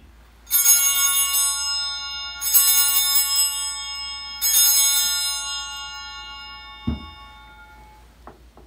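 Altar bells rung three times, about two seconds apart, each ring a cluster of bright tones that fade slowly, marking the elevation of the chalice at the consecration. A low thump follows near the end.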